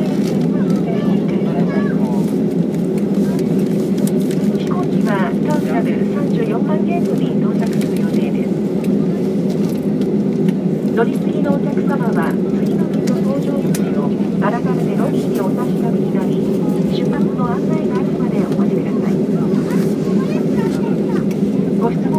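Airliner cabin noise while taxiing after landing: a steady low drone from the jet engines and cabin air system, with a constant hum in it. Faint voices are heard over it.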